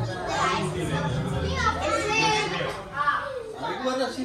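Children's voices talking and calling out over one another at play, some high voices rising and falling in pitch.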